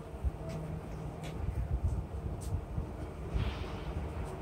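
Water dripping and trickling from a soaked sponge back into a glass bowl, with a brief trickle about three and a half seconds in and a few light ticks, over a steady low rumble.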